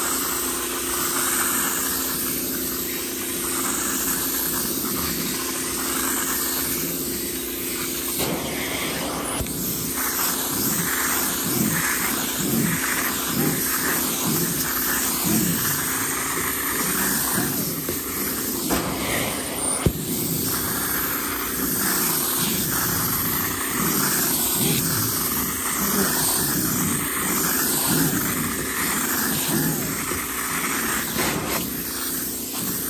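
Upholstery tool of a hot-water extraction machine pulled across fabric, with a steady vacuum motor hiss and hum and a suction sound that rises and falls about once a second with the strokes. One sharp click comes about two-thirds of the way through.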